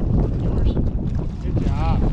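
Wind buffeting the microphone, a steady low rumble, with a brief rising-and-falling voice near the end.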